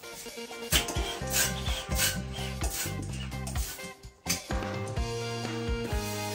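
Hand balloon pump inflating a 260Q latex modeling balloon: a rasping rush of air with each stroke, repeated about every half second, over background music.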